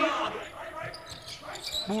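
A basketball being dribbled on a hardwood court, a series of short bounces heard in the quiet between commentary.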